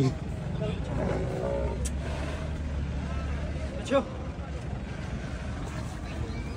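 Faint background voices over a low, steady rumble, with one short sharp sound about four seconds in.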